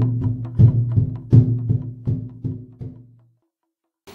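Intro music: a short drum pattern of low, pitched strikes that ring briefly after each hit, ending with a fading strike about three seconds in.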